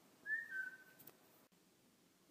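A brief two-note whistle used as an audio logo: a quick rising note that steps down to a slightly lower held note, under a second long.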